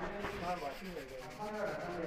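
Indistinct voices talking, pitch rising and falling without clear words, over a rubbing, scraping noise.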